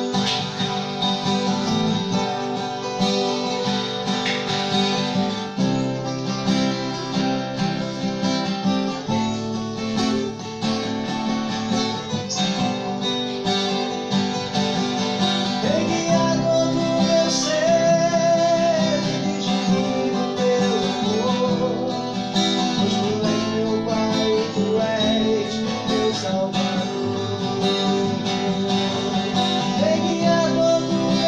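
Two acoustic guitars playing together, strummed and picked, in a steady song accompaniment. About halfway through, a man's voice comes in singing a melody over the guitars.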